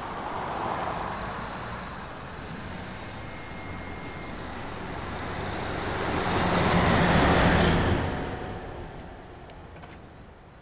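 Road traffic going by. A heavy IVECO truck's diesel engine and tyres grow louder as it passes close, loudest about seven seconds in, then fade away.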